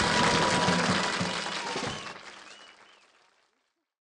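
Studio audience applauding after the song ends, fading out to silence about three seconds in.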